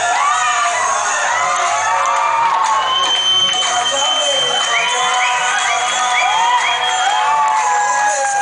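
Loud dance music with a steady beat played over speakers, with a crowd cheering and whooping over it. A long high held note sounds from about three seconds in to about seven seconds in.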